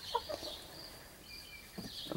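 Chickens giving a few soft, short calls in the first half-second, then little more than a faint, steady high-pitched tone in the background.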